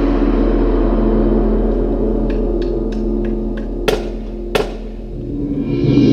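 Marching band and front ensemble playing: sustained low chords hold throughout, with a light ticking figure in the middle and two sharp metallic strikes about four seconds in, then a swell building near the end.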